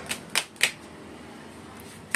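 Three quick, sharp clicks within the first second, then quiet room tone.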